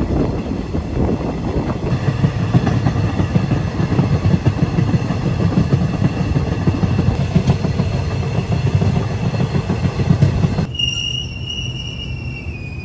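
Diesel-hauled intercity passenger train running on the track, a dense rumble with rapid wheel clatter. Near the end the rumble eases and a steady high squeal comes in as the train slows into a station.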